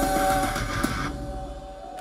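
Live rock band's final chord on electric guitars ringing out as sustained notes. The noisier full-band sound drops out about a second in, leaving the held notes fading.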